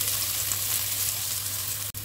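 Sliced fish balls, shallots and garlic sizzling in oil in a nonstick pan while being stirred with a spatula: a steady frying hiss with faint scattered ticks, browning stage of the stir-fry. The sound cuts out briefly near the end.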